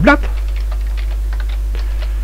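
Typing on a computer keyboard: quick, irregular key clicks over a steady low electrical hum.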